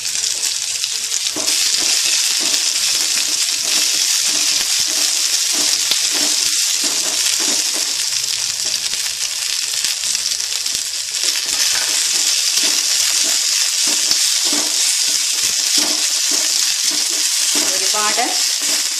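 Sliced onions sizzling loudly and steadily in hot coconut oil in a metal kadai as they are stirred with a spoon. The sizzle swells a little about two seconds in and again past the middle.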